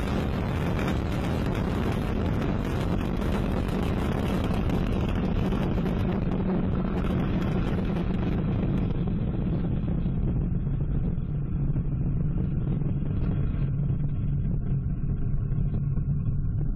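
Ariane 5 rocket climbing just after liftoff, its Vulcain main engine and two solid rocket boosters giving a steady, loud low rumble. The higher hiss drops away about nine seconds in, leaving a duller rumble.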